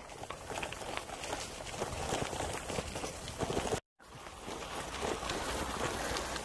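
Gravel bike tyres rolling over a rough track, a steady crackly crunch with a low rumble underneath. It cuts out for a moment just before four seconds in.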